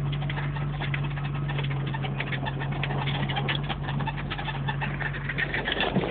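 Inside a 1995 Jeep Wrangler YJ driving over a snowy trail: the engine's steady drone, with frequent short squeaks and rattles throughout.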